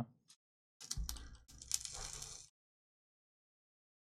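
Two short spells of clicking and crackling about a second in, as a box mod's fire button is pressed and a rebuildable atomizer's freshly built, unwicked coils are dry-fired.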